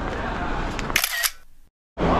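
Camera shutter clicking, a short burst of sharp clicks about a second in, over steady street noise; the sound then fades and drops to silence just before the end.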